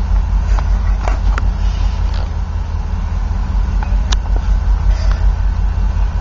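Steady low vehicle rumble heard from inside a car, with a few brief clicks.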